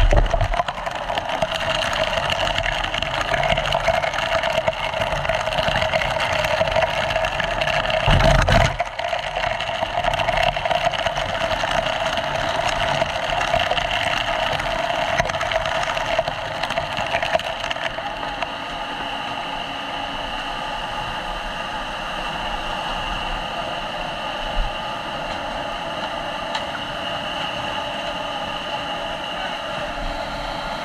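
Fire hose spraying water under pump pressure, with a fire pump engine running steadily behind it. A heavy thump comes about eight seconds in, and the sound thins slightly a little past halfway.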